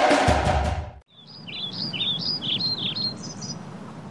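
Background music with percussive hits cuts off about a second in. Birds then chirp, a quick run of short high chirps over a soft hiss.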